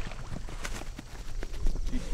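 Footsteps running on grassy ground: a quick, uneven run of soft thuds and clicks.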